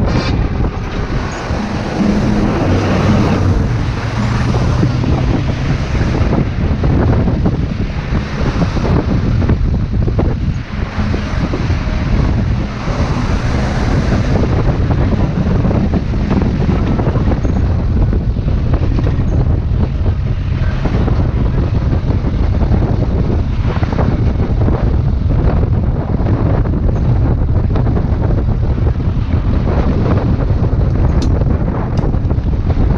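Wind rushing over the microphone of a camera on the outside of a moving van, with the van's engine running as a steady low drone and road noise underneath.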